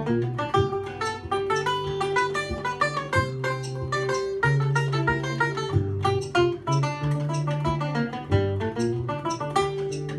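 Solo banjo played instrumentally: a quick, steady run of plucked notes over ringing low strings.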